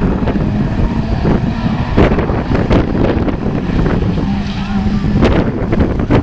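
Several autograss racing car engines running and revving together, a steady engine drone with wavering pitch, with wind buffeting the microphone.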